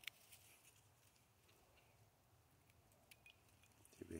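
Near silence, with a single faint sharp click right at the start and a few soft ticks about three seconds in, from small scissors snipping stems and fingers handling plants among dry pine needles.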